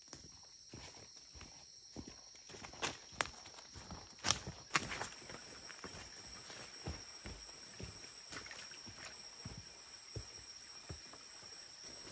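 Footsteps on a leaf-strewn dirt trail: irregular crunches and soft knocks, a few sharper ones a few seconds in. A steady high insect trill runs underneath.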